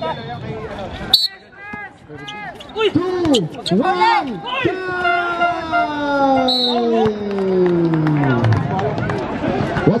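Voices calling out at a basketball game: a sharp knock about a second in, a run of short rising-and-falling calls, then one long drawn-out cry that slides steadily down in pitch as a jump shot goes up.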